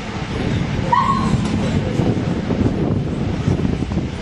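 A German Shepherd gives one short, high whine or yelp about a second in, over a steady low rumble.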